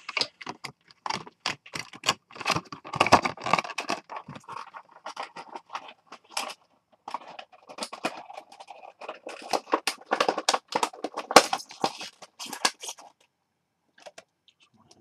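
Handling noise close to the microphone: a dense run of clicks, scrapes and rustles as a figurine and its packaging are moved about by hand, stopping about a second before the end.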